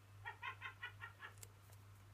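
A person's soft, high-pitched giggle: about six quick pulses in under a second.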